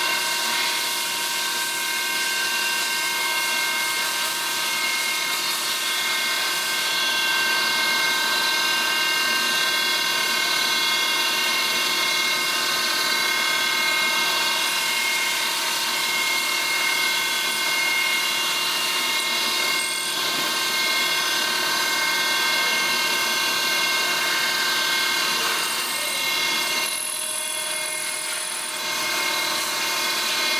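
CNC mill spindle running with a small end mill cutting a bearing tang notch into the aluminium main bearing girdle of a Lotus 907 engine: a steady whine of several pitches, briefly quieter near the end.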